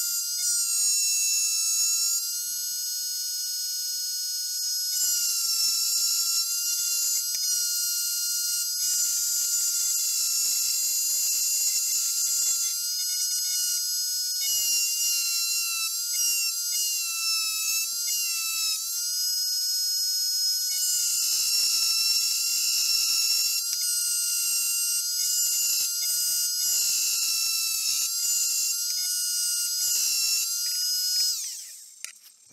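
Rotary engraving tool on a flexible shaft running at high speed while its bit engraves a perspex disc: a steady high-pitched whine whose pitch dips slightly now and then, with a scratchy grinding noise that comes and goes as the bit touches and lifts off the plastic.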